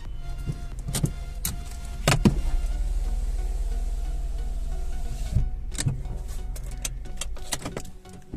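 Car driving, heard from inside the cabin: a steady low rumble of engine and road noise, broken by several sharp knocks and clicks, the loudest about two seconds in.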